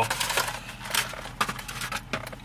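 Crackling, rustling handling noise: a quick, irregular string of clicks and crinkles, with a faint low steady hum underneath.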